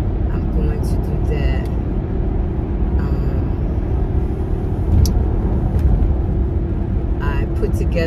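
Steady road and engine rumble inside the cabin of a moving car, with a constant low hum. A single sharp click with a bump comes about five seconds in.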